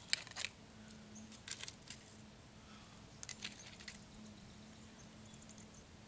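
Faint clicking and light metallic tapping in three short clusters, about a second and a half apart: an aluminium pop can used as a campfire frying pan, handled with a utensil as it is taken off the coals.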